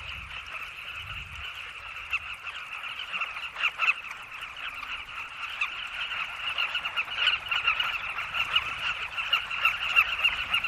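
Nesting colony of carmine bee-eaters calling all at once: a dense chorus of many overlapping short chattering calls, with louder individual calls standing out now and then and the din building toward the end.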